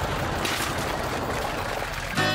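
Full-size van driving off along a gravel lane: engine and tyre noise, a steady rough rush with a low rumble.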